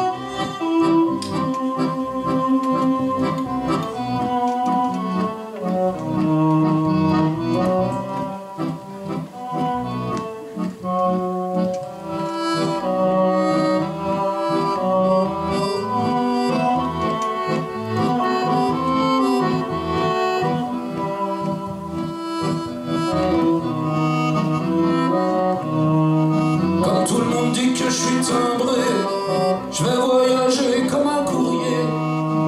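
Live band playing an instrumental passage: sustained melody notes over upright double bass and drums. The drums and cymbals get busier near the end.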